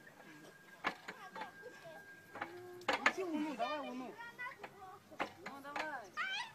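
Bystanders' voices talking and calling out fairly quietly, with three sharp clicks: about a second, three seconds and five seconds in. A faint, steady, high tone runs through the first half.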